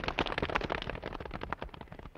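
A rapid clatter of many footsteps on a hard floor, fading away, as a group of soldiers is dismissed and breaks ranks.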